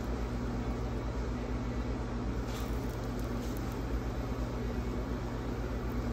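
Steady low background hum with a couple of faint light ticks.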